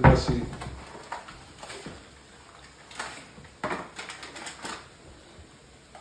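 Kitchen handling sounds: a few short, scattered clicks and rattles as a spice container is handled and shaken over a frying pan.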